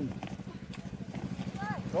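A small engine running steadily in the background with a rapid, even chugging pulse. A short voice comes in near the end.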